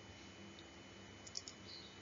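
Near silence: faint room tone with a steady low hum, and a couple of faint clicks about a second and a half in.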